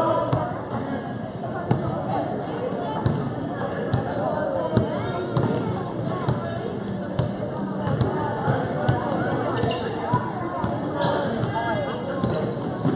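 A basketball being dribbled on an indoor gym floor, a string of bounces during live play, with voices from players and spectators underneath.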